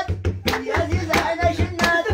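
People singing over steady, rhythmic hand clapping.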